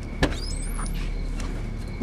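A car boot latch clicks open about a quarter second in, followed by a short rising squeak as the lid lifts, over a steady low hum. A louder knock comes right at the end.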